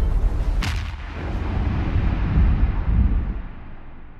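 Cinematic boom sound effect under an animated logo: a deep rumble with one sharp crack under a second in, swelling again, then fading away slowly.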